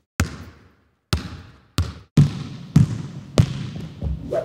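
Sound effects for an animated title: six sharp hits, each with a short ringing tail, coming closer together toward the end.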